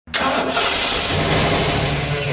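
Car engine starting and running: a sudden loud start, with a steady low engine note joining about a second in.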